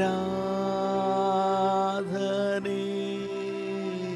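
A man singing long, drawn-out notes of a Kannada devotional worship chant, with a brief break and a new note about two seconds in.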